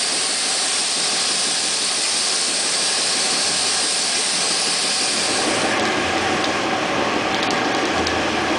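Compressed-air paint spray gun spraying, a loud steady hiss of air and atomised paint that cuts off abruptly about three-quarters of the way in, leaving a fainter hiss.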